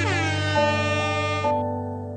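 Background music of sustained, held notes that change pitch every second or so. It opens with a quick downward swoop in pitch as the song gives way to it.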